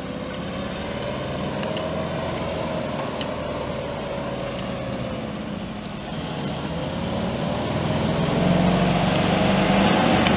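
A Chevrolet 427 cubic-inch V8 gas engine running near idle, with a whine that slowly rises and falls in pitch twice. It grows louder in the last couple of seconds.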